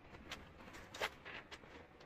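Faint, brief rubbing strokes of a polishing cloth on a leather boot during a shoe shine, with a sharper tick about a second in.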